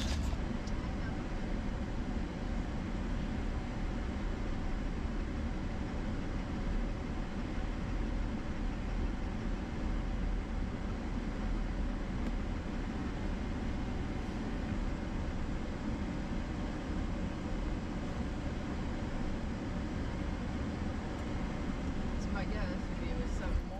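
Steady engine and tyre noise of a Chevrolet Silverado pickup driving slowly along a dirt road, heard from inside the cab.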